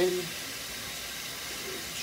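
Tap water running steadily into a bathroom sink as a comb is rinsed under it.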